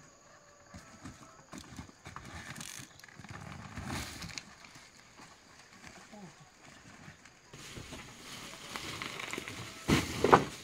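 Rustling, scuffing and knocking as a heavy sack of corn cobs in a woven basket is carried up into a wooden truck bed, with a louder knock near the end as the load comes down onto the boards.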